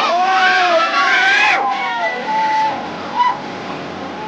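Crowd of spectators shouting and whooping together, with voices rising in pitch for about a second and a half before breaking off. Scattered shorter yells follow, and one brief loud shout comes near the end.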